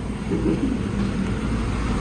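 A steady low rumble with a faint droning hum running under it.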